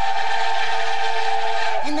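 Nickel Plate Road #587's cracked steam locomotive whistle blowing one long, loud, steady blast: a held chord over a breathy steam hiss, cutting off just before the end.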